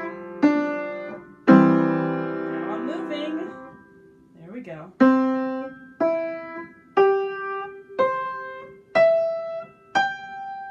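Upright piano playing a simple beginner melody: a few struck notes and a held chord, a short pause, then single notes about once a second, with the hands in C position moving up the keyboard to play a line an octave higher.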